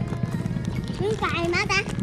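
A motorbike engine idling with a steady, rapid low pulse. A child's voice speaks over it in the second half.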